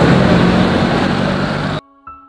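Loud street traffic noise with a motor vehicle's engine running close by, cut off suddenly near the end.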